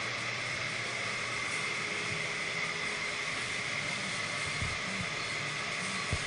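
Steady rushing air noise with a faint high whine held throughout, like a spray booth's ventilation fan running.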